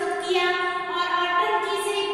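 A woman's voice lecturing, with long drawn-out syllables at a high pitch.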